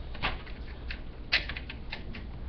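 Handling noise from a small decorative lantern: a few light clicks and scrapes as it is picked up and turned over in the hands.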